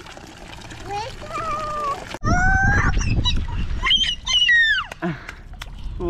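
A toddler's wordless high-pitched calls and squeals, the loudest about two seconds in and again near four seconds with a falling pitch, over the faint splash of water running from a playground tap spout into a stone basin.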